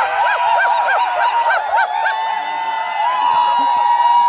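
Many overlapping high-pitched whistles and hoots from a crowd of people. It includes a quick run of short up-and-down whistle notes, about four a second, and a long steady whistle tone.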